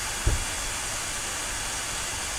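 Steady background hiss of the recording's microphone, with one brief low thump about a quarter of a second in.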